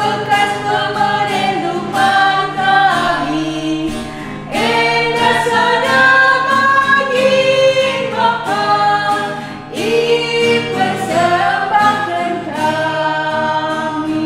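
Three women singing a Karo Batak hymn together in a slow melody, accompanied by a strummed acoustic guitar.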